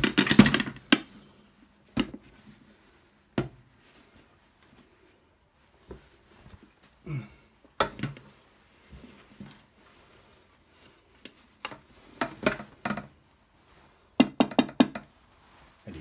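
An aluminium pot and a ceramic plate knocking and clattering as they are handled through a cloth tea towel, the pot turned upside down onto the plate. The knocks come irregularly, with a cluster at the start, single ones about 2, 3.5 and 8 seconds in, and a busier run of clatter near the end.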